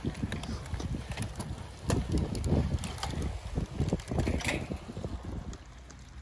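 Wind buffeting the microphone in uneven gusts, strongest about two to three seconds in, with scattered light knocks.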